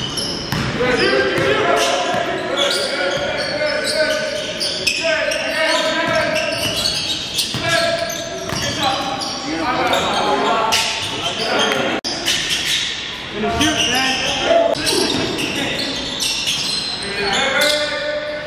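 A voice going almost without a break, echoing in a large gymnasium, over a basketball bouncing on the hardwood floor.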